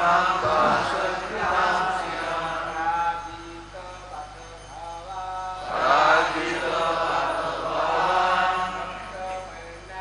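Voices chanting the lines of a Sanskrit verse in slow, melodic recitation: one long phrase at the start and a second beginning about five and a half seconds in.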